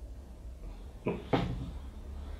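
Two short knocks about a third of a second apart, a little over a second in, as the bottle and glass are taken up for the table. A low steady hum runs underneath.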